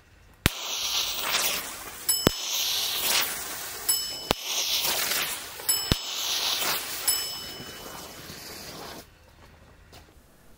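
Four standard e-matches firing one after another, each a sharp pop about two seconds apart, followed by the steady hiss of thin green visco fuse burning. A high chime-like ding sounds four times as the fuses burn through.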